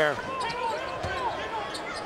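Basketball game sound from the arena: a ball bouncing on the hardwood court, with a few short knocks over steady crowd noise.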